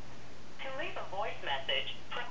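A short phrase of speech heard over a telephone on speakerphone, starting about half a second in and lasting about a second and a half, over a steady low hum.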